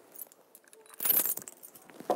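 A brief rattle about a second in, lasting under half a second, with faint small handling noises before it.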